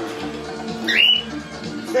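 A cockatiel gives one short rising call about a second in, over a Latin song playing from a portable tape player.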